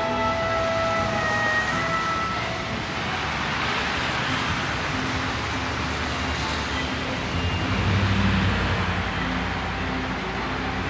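City street traffic: a vehicle goes by with a swelling hiss in the middle, and a heavy vehicle's low engine rumble rises near the end as the loudest part. A few held musical notes sound in the first couple of seconds.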